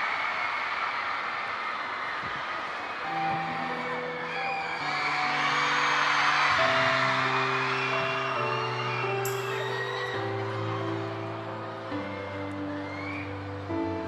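Arena crowd screaming and cheering in the dark, loudest a few seconds in. Slow, held instrumental chords enter about three seconds in and shift every second or two: the opening of a live song.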